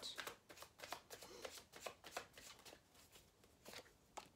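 Faint rustling and quick soft clicks of a deck of oracle cards being handled in the hands, card edges flicking against each other; the clicks thin out near the end.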